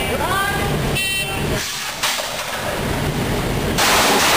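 A brief spoken command, then an electronic shot timer gives one short, high beep about a second in: the start signal for the shooter. A loud rushing noise sets in near the end.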